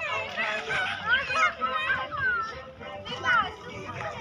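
Several children's and adults' voices calling out and chattering over one another at play.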